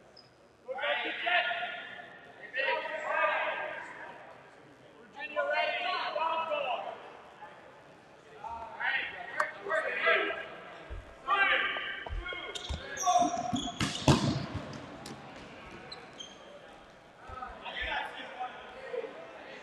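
Dodgeball players shouting calls across a large, echoing gym, with rubber balls thudding on the hardwood floor and one loud ball smack late on.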